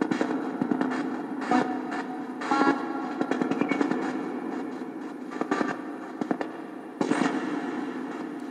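Dense, choppy crackling static with brief snatches of tone over a steady low hum, starting abruptly, like the output of a radio-scanning device.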